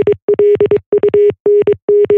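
A single steady mid-pitched electronic tone keyed on and off in a quick run of short and long beeps, like Morse code.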